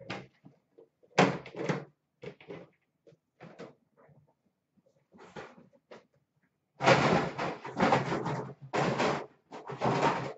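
Metal card-box tins and boxes being picked up and set down on a glass counter: scattered knocks and clunks, then a louder, denser run of clattering and handling noise over the last three seconds.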